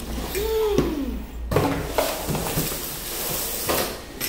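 Cardboard scraping and rustling as a cordless grass trimmer's aluminium shaft and motor unit are lifted out of their shipping box, with a brief squeak near the start and a few knocks.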